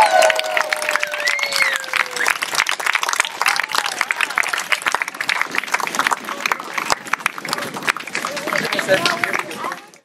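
Onlookers cheering and clapping after a baptism immersion: one voice holds a long falling whoop over the first two seconds, then scattered clapping and voices go on and fade out at the very end.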